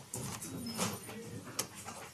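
Courtroom room noise as people rise and move: chairs shifting, clothing and papers rustling, and scattered soft knocks and footsteps.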